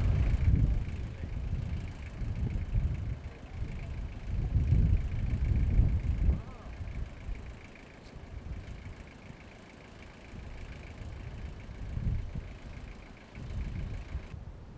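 Wind buffeting the camera microphone in gusts, low rumbling surges that ease off after about six seconds and pick up again briefly near the end, over a faint steady high buzz.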